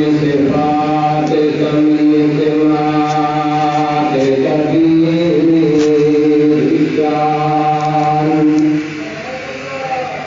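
A man's voice chanting in long, held notes, with ornamented turns of pitch in the middle; the chant ends about nine seconds in and the sound drops much lower.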